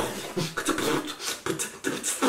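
A man making quick, choppy vocal sounds with his mouth, with short clicks in between. It is a vocal imitation of a fast violin passage.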